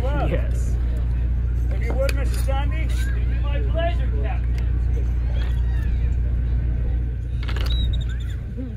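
Performers talking at a distance, their voices carried over a steady low rumble. A single sharp click comes near the end.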